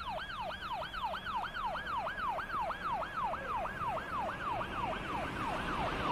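Electronic siren in a fast yelp, its pitch sweeping up and down about four times a second, steady throughout.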